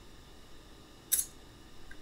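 Faint steady hiss of a home voice recording, with one short, sharp hiss of breath at the microphone about a second in.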